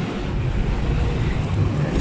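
Steady street traffic noise, an even rushing hum with no distinct events.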